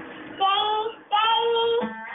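A high singing voice holding two long notes, each well over half a second, with a short break between them.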